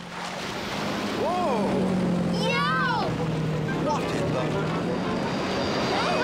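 Cartoon motor-boat soundtrack: a steady low engine hum under a constant wash of water. Two short wordless voice sounds come in, one about a second in and one near three seconds.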